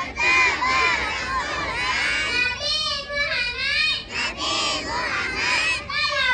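A group of young children chanting a pledge together in unison, many voices rising and falling in pitch together, loud and continuous.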